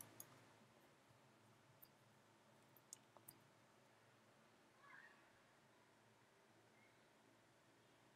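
Near silence, broken by a few faint, short clicks in the first half.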